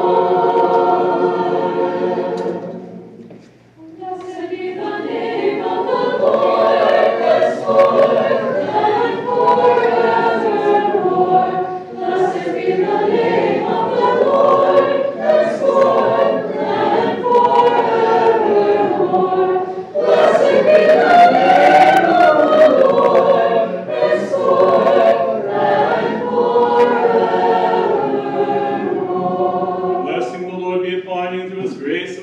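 A choir singing Orthodox liturgical chant a cappella in several parts. A held chord fades out about three seconds in, and the singing starts again a second later and carries on in phrases.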